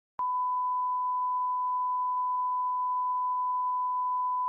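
A steady electronic beep: one pure, unwavering high tone, like a 1 kHz test tone, starting a moment in and holding unbroken.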